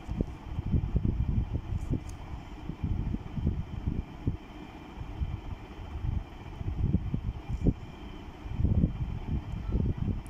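Pen drawing on paper on a desk, heard as an irregular low rumble with soft knocks and rubbing, with a few sharper taps.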